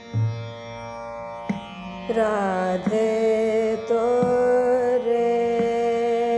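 Hindustani classical vocal music in Raag Ramkeli at slow vilambit ektaal. A woman's voice enters about two seconds in and holds a long, slightly bending note over a steady drone, with occasional tabla strokes.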